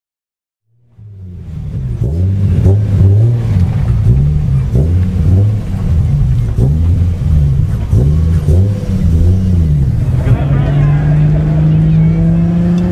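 Turbocharged Toyota 2JZ straight-six in a Nissan 240SX drag car, revved again and again so its pitch rises and falls about once a second, then held at a steady high rev from about ten seconds in.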